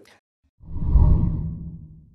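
A single deep whoosh sound effect for an animated graphic transition, swelling up about half a second in and dying away over the next second and a half.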